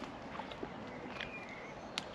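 A dog lead's clip being undone at a dog's collar: faint handling, then one sharp click near the end.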